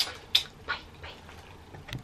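Three quick kissing smacks from blown kisses, about a third of a second apart, the middle one the loudest; a faint click near the end.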